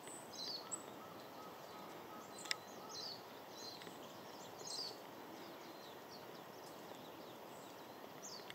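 A few short, thin, high-pitched songbird calls, each sliding slightly down, scattered over faint outdoor background noise, with one sharp click about two and a half seconds in.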